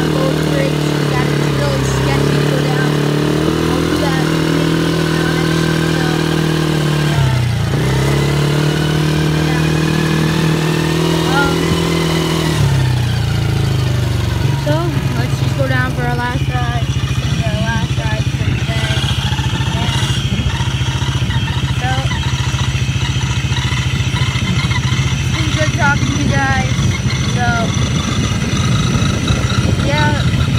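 A 110cc quad's small single-cylinder engine running as it is ridden. Its pitch dips briefly twice in the first half, then from about halfway it holds a steady, slightly lower note with a rougher, rattling texture.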